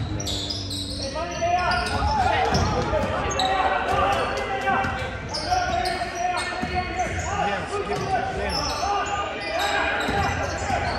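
Basketball game in a gym: a ball bouncing on the hardwood court and sneakers squeaking, under a steady mix of voices and shouts from spectators and players that echoes through the hall.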